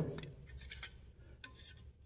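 Faint handling noise from an engine wiring harness being held and moved by hand: a few light plastic clicks and rustles.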